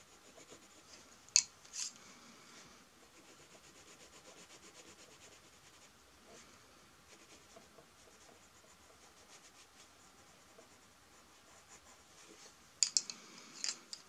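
Castle Art coloured pencil shading on paper, a soft, steady scratching of quick strokes. Wooden pencils click against each other as they are handled, twice about a second and a half in and again near the end.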